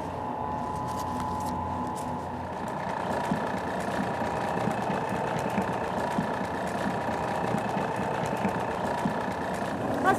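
Large commercial planetary stand mixer running steadily, its wire whip beating a thick egg-white and sugar nougat mixture in a stainless steel bowl: a constant motor hum and whine with light, fast ticking.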